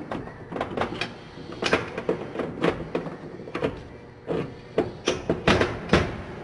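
Detroit Diesel Series 60 rocker arms and rocker shaft clinking and knocking as they are handled and slid together on a metal workbench: irregular metal clicks, a few each second, the loudest near the end.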